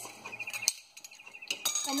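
Dry dehydrated hash brown shreds pouring from a glass jar through a funnel into a glass mason jar, with one sharp clink of glass about a third of the way in. A bird trills faintly in the background.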